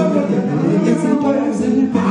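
A men's vocal group singing unaccompanied into microphones, several voices sounding together in sustained, shifting pitches.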